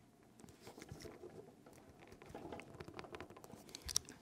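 Compression crimping tool being squeezed shut on a BNC connector on RG6 coax cable: faint creaks, rustles and small clicks from the tool and hands, with a sharper click near the end.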